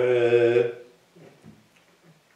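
A man's drawn-out hesitation sound, a steady held "eee" at one pitch for just under a second. It then falls away to quiet room tone.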